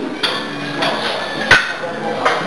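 Weight plates clanking against a barbell and each other as loaders change the plates, with one sharp metal clank about one and a half seconds in.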